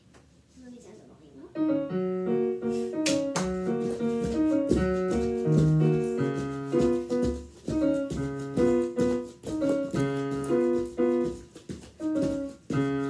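Digital piano playing a piece on its own through its built-in speakers, starting about a second and a half in after a brief quiet: a run of melody notes over changing broken chords, fairly loud.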